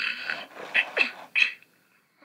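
Big Hugs Elmo plush toy in sleepy mode, playing recorded breathy sleeping sounds through its small speaker: one long breath, then three short ones, the middle one sliding down in pitch.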